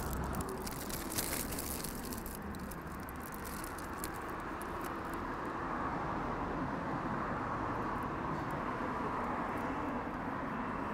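Street traffic noise, a steady rush that swells a little partway through as vehicles go by. Crinkling of a foil-wrapped döner comes in the first couple of seconds.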